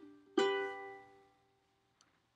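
Ukulele playing the song's closing chord: a light pluck, then one strum about half a second in that rings and fades out.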